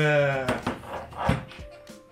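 A man's drawn-out hesitation sound at the very start, over soft background music, with a sharp knock a little after a second in.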